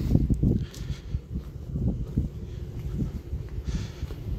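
Wind buffeting the camera's microphone, an irregular low rumble, with footsteps on concrete as the camera is carried along.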